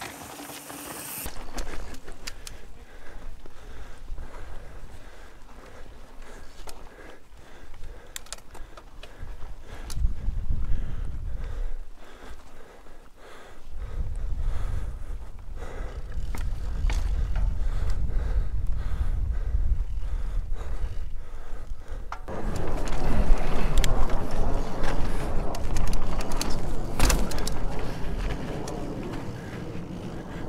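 Mountain bike riding over sandstone slickrock, heard from a camera mounted on the bike: tyres rolling on rock with clicks and rattles from the bike. There is heavy low rumbling in places, and the rolling noise grows louder and rougher about two-thirds of the way through.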